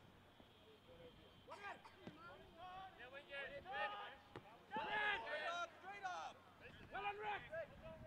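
Faint, distant shouting from players on a soccer pitch: short calls during open play that start about a second and a half in and are loudest around five seconds in. The words cannot be made out.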